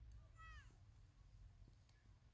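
Near silence, broken about half a second in by one short high-pitched call that drops in pitch as it ends.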